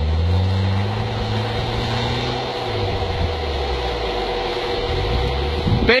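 A 4x4 SUV's engine pulling hard through deep snow, its pitch rising over the first two seconds or so, easing back, then climbing again near the end, with the tyres churning through the snow.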